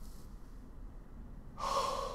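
A man's short, sharp breath, a gasp, near the end, over a faint low room hum.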